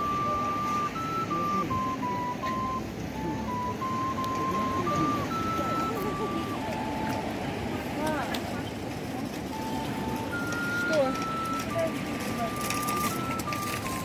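A slow melody played on a vertical end-blown flute, one clear note at a time, each held for about half a second to a second, stepping up and down. Crowd chatter and passing voices run under it.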